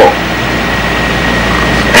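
Steady rushing background noise of the hall and its microphone system, with a low hum and a faint, steady high whine, in a pause between spoken sentences.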